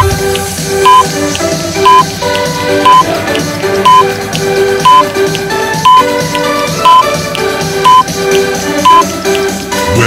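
Background music with an interval timer's countdown beeps over it: a short, loud, high beep once a second, ten in a row.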